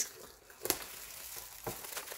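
Plastic bubble wrap crinkling as it is handled and slit with a utility knife, with a couple of faint crackles.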